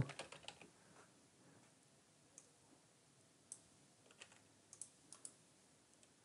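Faint, sparse clicks of a computer keyboard and mouse: a quick run of keystrokes at the start, then single clicks spaced a second or so apart, and a short cluster of several clicks between about four and five seconds in.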